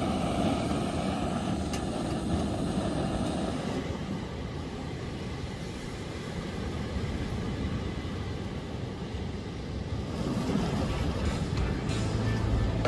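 Canister camp stove burning with a steady hiss, then after about four seconds a lower, steady rush of ocean surf and wind.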